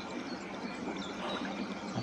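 Steady trickle of running water, with a few faint bird calls.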